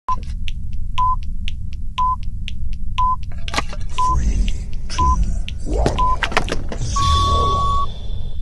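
Electronic time-signal pips: a short high beep once a second, with a clock-like tick between the beeps, over a steady low rumble. The sequence ends in one long beep near the end, marking the turn of the hour.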